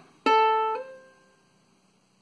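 Ukulele's open A string plucked once; about half a second later a third-finger hammer-on to the third fret raises the still-ringing note to C without a second pluck, and the note fades within about a second.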